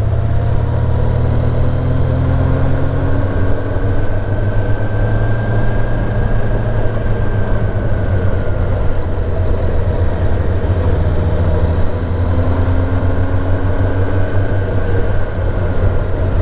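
Kawasaki ZX-10R's inline-four engine running steadily while riding at town speed, its note rising and falling gently with small throttle changes.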